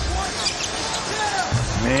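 Live basketball game sound in an arena: the ball bouncing on the hardwood court over a steady crowd murmur.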